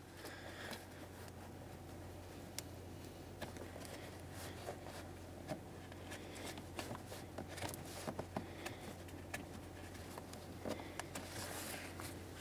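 Faint rustling and light scuffing of a shop rag wiping the engine's purge valve mounting port clean, with scattered small ticks, over a low steady hum.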